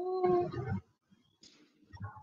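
A single drawn-out call with a clear pitch that rises a little and then holds, ending under a second in, followed by faint scattered noises.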